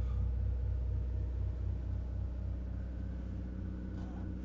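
Motor coach's onboard generator running, heard from inside the coach: a steady low hum with a faint regular throb.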